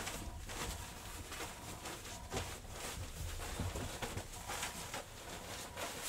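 Soft, irregular rustling of cotton bedding as a duvet insert and its cover are rolled up together on a bed.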